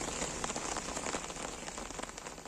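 Steady rain falling on floodwater: a dense spatter of drop ticks over a steady hiss, getting a little quieter toward the end.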